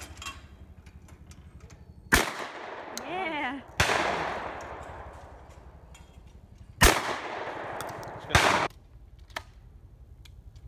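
Four shotgun shots at sporting clays, fired as two report pairs: two shots about a second and a half apart, then two more a few seconds later. Each shot is followed by a trailing echo.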